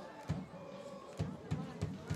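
On-field sound of a soccer match: a few soft thumps of the ball being kicked, spread through the two seconds, over faint distant voices.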